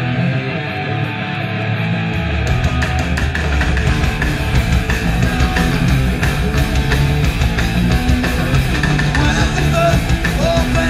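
Live rock band launching into a fast song: distorted electric guitar alone for about two seconds, then bass and drums come in and the full band plays on.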